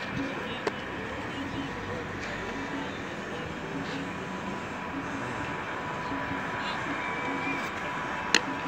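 Faint distant voices over a steady outdoor background noise, with one sharp click just under a second in.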